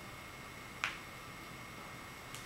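A single sharp click a little under a second in, as a dry-erase marker tip strikes the whiteboard, over faint steady room hiss.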